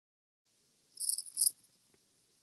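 Two short, high-pitched chirps about half a second apart, over a faint hiss.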